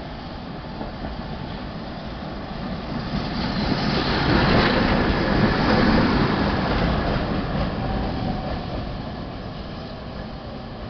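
Tatra KT4D tram running past on its rails: it grows louder as it approaches, is loudest as it passes close by about four to six seconds in, and fades as it moves away.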